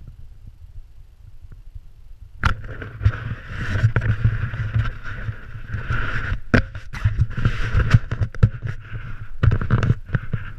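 Snowboard sliding and scraping over snow, with wind and rubbing on an action camera's microphone giving a heavy rumble and frequent knocks; it starts abruptly about two and a half seconds in.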